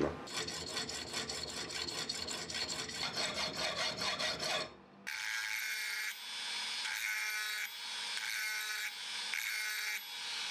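Round needle file rasping along a slot cut into a brass hex bar. Quick short strokes run for the first five seconds or so, then after a brief pause come slower strokes, each about a second long, with a faint ring from the brass.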